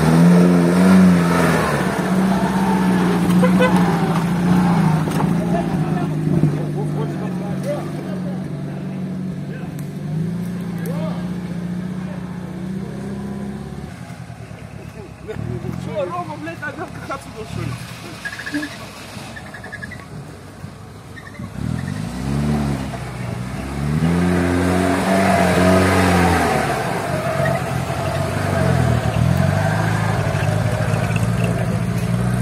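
UAZ off-road vehicle engines labouring through deep mud. One engine runs hard and steady for the first half, then eases off. From about two-thirds of the way in, a second engine is revved up and down repeatedly as it works through the hole.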